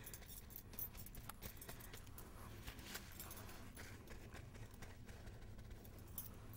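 Faint rustling of a crumpled paper towel dabbing glaze onto a silver-leafed lamp base, with many small, irregular taps and clicks.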